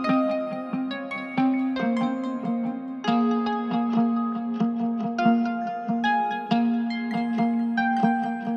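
Trap-style instrumental beat in a stripped-down passage: a plucked guitar melody playing on its own, with no drums or bass.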